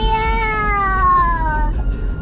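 A toddler girl singing one long held note that rises at the start, then slowly slides down and breaks off near the end, over the low rumble of a moving car.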